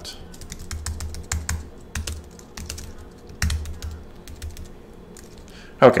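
Typing on a computer keyboard: scattered, irregular key clicks, some in quick runs.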